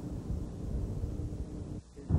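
Outdoor wind noise on the microphone: a low rumble with faint hiss that drops out briefly just before the end.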